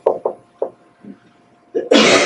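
Marker strokes on a whiteboard as a word is written: about five short, quick knocks in the first second, then a pause. A man's voice begins just before the end.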